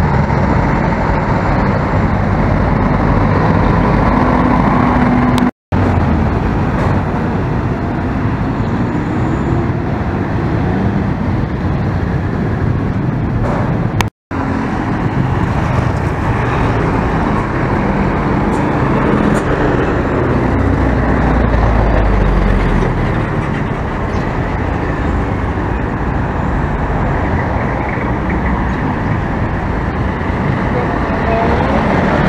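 Busy mixed road traffic: motorcycles, cars, trucks and a city bus passing, a continuous run of engine and tyre noise. The sound cuts out completely for a moment twice, and a deeper engine rumble swells about two-thirds of the way through.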